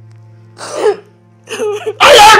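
Soft background score of sustained low tones, with two short, loud sobbing outbursts from a distressed woman, the first about half a second in and the second near the end.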